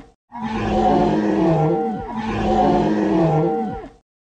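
A recorded dinosaur roar sound effect, the same roar played twice back to back. Each roar lasts about a second and a half and drops in pitch as it fades.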